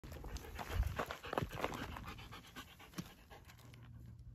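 Siberian husky panting in quick, rhythmic breaths, loudest in the first two seconds and fading after.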